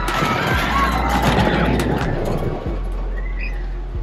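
Roller coaster riders screaming as the train runs past on the track, over background music. The screams die away after about three seconds.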